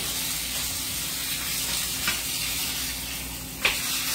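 Fish frying in a skillet, sizzling steadily. A utensil clinks against the pan faintly about two seconds in and more sharply near the end.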